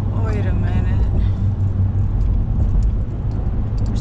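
Steady low rumble of engine and road noise inside a car's cabin at highway speed. A short voice-like sound comes in the first second.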